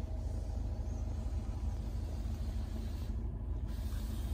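Steady low rumble of a 2021 Jeep Wrangler idling, heard from inside the cabin.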